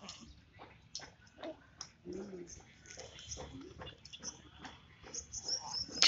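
A newborn baby's faint short whimpers and grunts, a few separate soft sounds, the clearest about two seconds in, with small handling clicks and cloth rustles.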